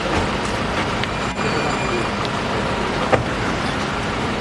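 Steady rushing background noise, with a short sharp click about three seconds in.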